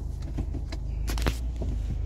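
Car's low, steady engine and cabin hum heard from inside the car as it is being parked, with a few light clicks and rustles.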